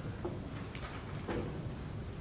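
Steady low room rumble with a few faint knocks about half a second apart.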